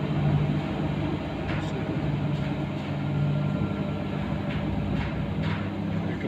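Gusting storm wind with a steady low hum running underneath it.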